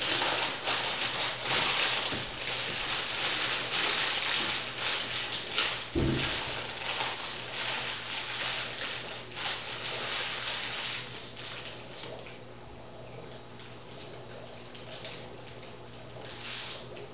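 Plastic bag or packaging crinkling and rustling as it is handled, with a single thump about six seconds in; the rustling dies down after about eleven seconds.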